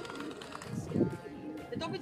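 Racing pigeon cooing, low and rounded, loudest about a second in, with people's voices and background music underneath.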